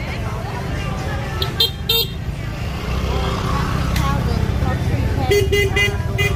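Vehicle horn tooting: two short toots about a second and a half in, then a quick run of toots near the end, over crowd chatter and a steady low rumble.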